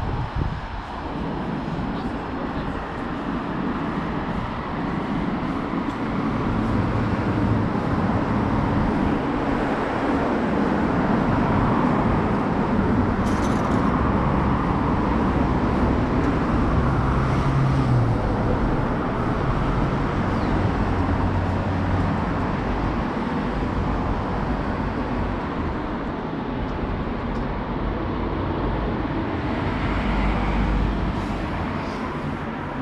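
Road traffic noise: a steady rush of passing vehicles that swells gradually towards the middle and eases off near the end.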